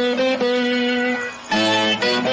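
Instrumental music: a plucked string instrument plays a melody of held notes. The sound dips briefly about a second and a half in, then new notes begin.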